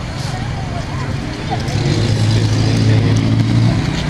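Night street traffic: a car engine's low, steady hum grows louder about two seconds in, with faint voices of people in the background.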